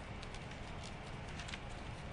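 Courtroom room tone: a steady low hum with a few faint, scattered clicks and ticks.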